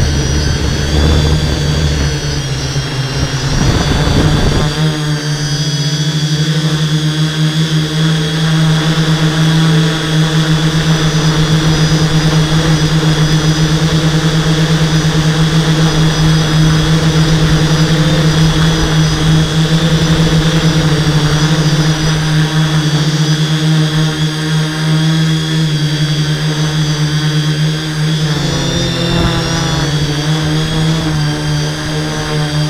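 Electric motors and propellers of a multirotor drone in flight, heard through the camera mounted on the craft: a steady, loud hum with a strong low note and higher overtones. There is rougher rushing noise for the first four seconds or so, and the pitch wavers near the end.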